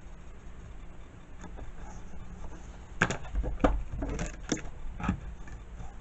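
Clear plastic ruler handled on cardstock over a cutting mat: a cluster of about five sharp taps and knocks from three to five seconds in, one with a dull thump, as the ruler is lifted and set down in a new position.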